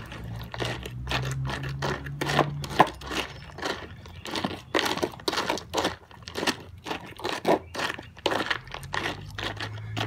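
Dry dog food kibble crunching, an irregular run of sharp crunches and clicks.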